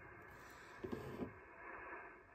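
Faint hiss of HF band noise from the Yaesu FT-710's receiver, tuned to 7.168 MHz on lower sideband, with a couple of faint short sounds about a second in. The DX station being listened for is not on the air.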